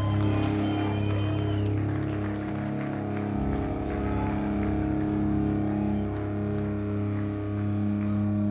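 Live rock band playing a slow intro of sustained, droning low notes with no clear beat, cutting in abruptly at the start.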